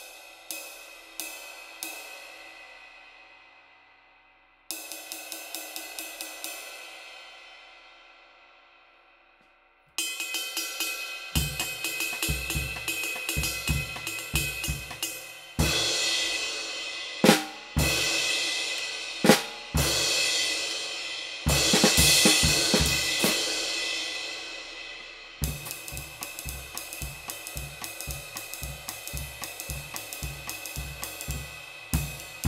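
A thin, light 20-inch K Zildjian pre-aged dry light ride (about 1920 grams) played with sticks: a few strikes left to ring, then a steady ride pattern. About ten seconds in a kick drum and snare join; the cymbal is crashed in the middle with long washes and two sharp loud hits, then ridden again near the end.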